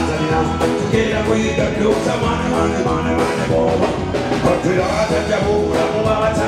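Live band music with keyboard and drums, a male vocalist singing over it through a microphone.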